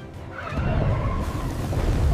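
Sound effect of a hydrothermal vent erupting: a rumbling rush of water and steam that starts about half a second in and builds in loudness.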